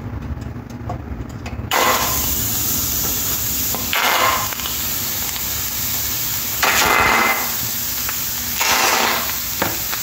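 Chicken legs sizzling in hot oil as they are laid one by one into a stainless steel frying pan. The sizzle starts about two seconds in and flares louder three times as pieces go in, over a low steady rumble.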